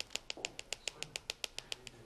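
Quick, light taps on the bottom of a small plastic bottle of shimmer powder, about seven a second, shaking the powder out of its nozzle.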